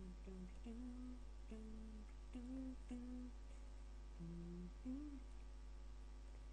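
A man softly humming a tune to himself: a string of short, low held notes that step up and down in pitch.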